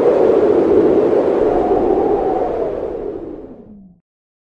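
A rushing whoosh sound effect from a studio logo intro, a loud noisy swell like blowing wind that slowly fades and dies away just before the end, with a low tone sliding down in the last moment.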